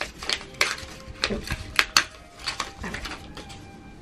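A paper envelope being handled and opened by hand: a run of sharp crinkles and crackles, the loudest pair about two seconds in.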